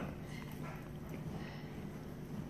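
Faint mouth sounds of a man chewing a soft bite of biscuit and jelly with his mouth closed, over low room hiss.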